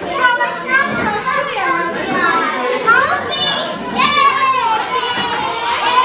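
A group of small children chattering and calling out over one another in a room, several voices at once; about four seconds in, one high voice holds a long drawn-out call.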